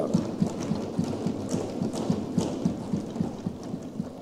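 Many members thumping their desks in applause, a rapid, uneven patter of dull thumps that shows approval of the vote count just read out.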